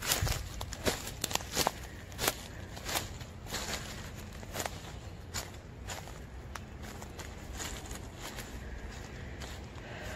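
Footsteps on wood-chip mulch and fallen debris, heard as irregular crunching and crackling clicks. They are busiest in the first half and sparser later, over a steady low rumble.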